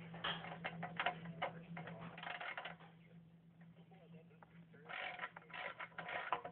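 A small socket ratchet clicking in short runs as a tiny bolt is backed out of the recoil starter shroud of a Predator 212 small engine, over a steady low hum. The clicking pauses for a couple of seconds in the middle and resumes near the end.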